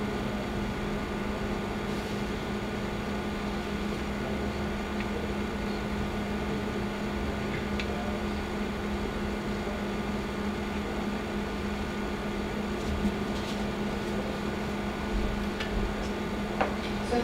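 A steady mechanical hum that holds one pitch throughout, like a room's ventilation or a machine's fan, with a few faint ticks near the end.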